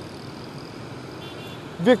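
Road traffic noise from passing motorbikes and cars: a steady, even hum and hiss.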